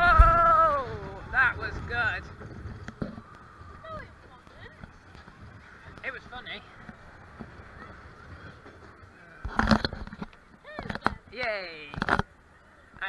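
Roller coaster riders shrieking and whooping over the ride's running noise. A long shriek falls in pitch at the start, short cries follow, then comes a quieter stretch, a loud rush of noise about nine and a half seconds in, and more shrieks near the end.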